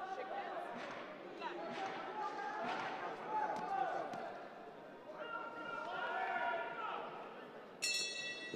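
Indistinct voices in a large hall, then a brass ring bell struck near the end, its ring carrying on: the bell that starts round one.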